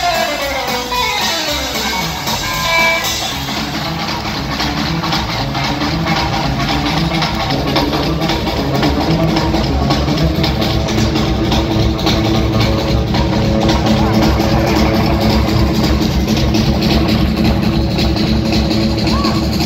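Live rockabilly trio: electric guitar opens with a long falling glide in pitch, then guitar, upright bass and drums play together, the sound getting fuller and louder about halfway through.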